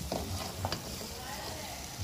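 A spatula stirring and scraping mixed vegetables around a frying pan, with a few short knocks against the pan in the first second, over a faint sizzle of oil frying.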